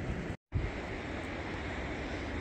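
Steady wash of sea surf on a rocky shore mixed with wind, broken by a brief gap of silence about half a second in.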